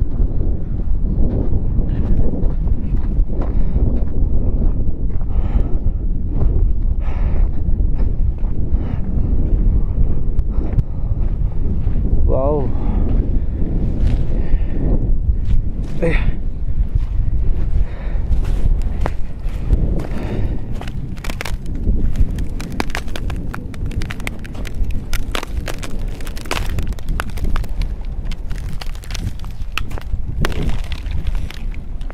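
Wind buffeting the microphone in a heavy, steady rumble. From about eighteen seconds in, it is joined by footsteps cracking and crunching over thin ice and frozen gravel.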